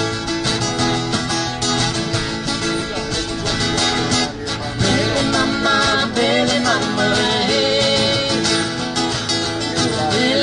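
Two acoustic guitars strummed together in a live folk song, with singing that comes through more clearly about halfway through.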